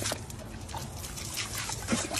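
A dog snapping and biting at the spray from a garden hose nozzle: a steady hiss of water splattering on its mouth, with quick wet snaps and splashes and the loudest one near the end.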